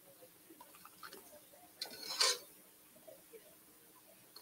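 Small clicks and knocks of a metal ladle working in a steel pot of soup as it is served into cups, with one louder, brief scrape about two seconds in.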